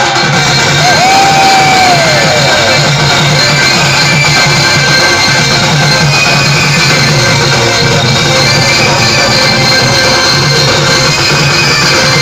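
Loud live stage music played through a PA, with drums and a steady beat. About a second in, a held lead note slides down in pitch.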